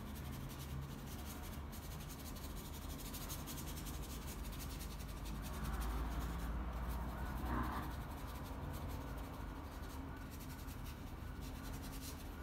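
Acrylic paint being scrubbed onto a sketchbook page with a small paintbrush: a faint, irregular scratchy rubbing of bristles on paper, a little louder for a couple of seconds around the middle.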